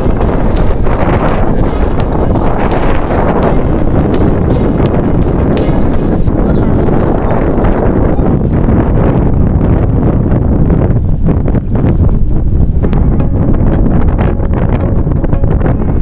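Wind buffeting the microphone, a loud low rumble, with water splashing and sloshing in the first few seconds.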